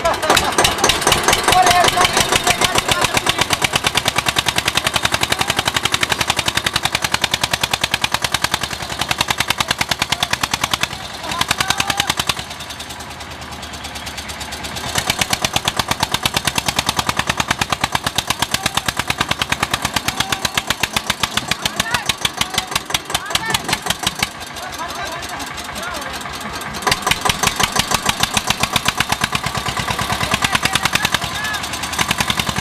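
Tractor's diesel engine running hard under load, a rapid, even chugging of firing strokes as it strains to haul a sand-laden trailer up out of a pit. It eases off twice and picks up again.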